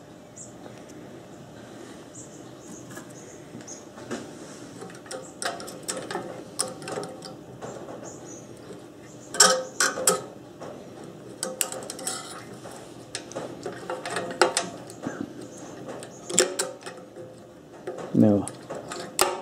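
Needle-nose pliers clicking and scraping on the small steel governor linkage and governor spring of a Briggs & Stratton mower engine while the spring is worked off: scattered light metallic clicks and taps, loudest about halfway through and again near the end.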